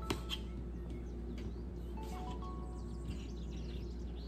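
Soft instrumental background music of slow, held melody notes. Right at the start, a knife clicks a couple of times against a plastic cutting board while halving cherry tomatoes.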